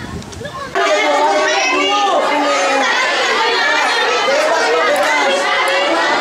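Quiet outdoor sound, then less than a second in, an abrupt change to many young children chattering and calling out at once, loud and continuous, their voices overlapping.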